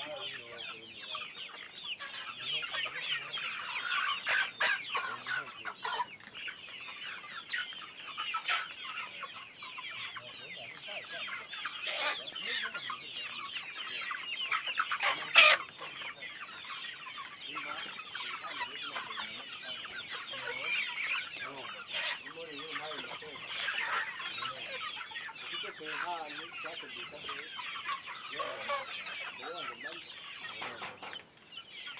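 A large flock of chickens clucking and chattering continuously, many birds calling over one another. A sharp knock stands out about halfway through.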